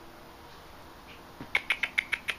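A quick run of sharp clicks, about six a second, starting about a second and a half in: a person making clicking sounds to call a dog.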